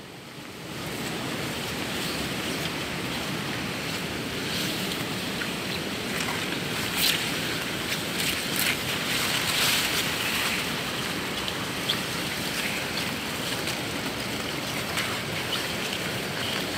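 A steady rushing noise with scattered rustles and light crunches as people push through wet maize plants and undergrowth on foot.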